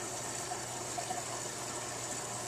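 Aquarium water circulation from the tank's filter and aeration: a steady rush and bubbling of water.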